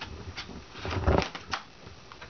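Hands handling an upturned MacBook Pro's aluminium case and battery: a few light clicks and knocks, with a louder knock and rubbing about a second in and a sharp click shortly after.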